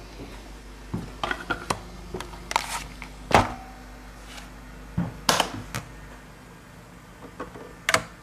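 Hands handling a vinyl single and turntable: a scatter of irregular knocks and clicks in small clusters, the loudest about three and a half seconds in, over a low steady hum.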